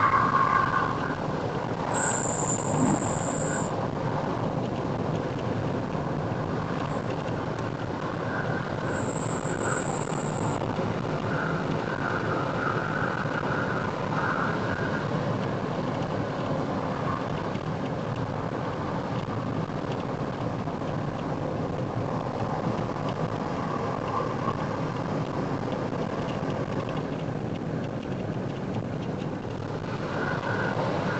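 Steady road and engine noise of a car driving along an expressway, heard from inside the cabin.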